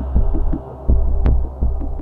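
Background score thinned to a deep, throbbing bass pulse, with a few short higher notes over it.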